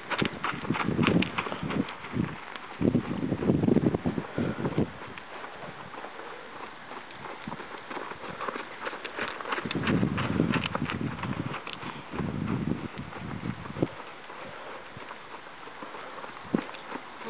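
Bay dun Morgan mare trotting on sand arena footing: quick, irregular hoofbeats and light clicks. Low rumbles come and go, loudest about a second in, around three to four seconds in, and again from about ten to thirteen seconds in.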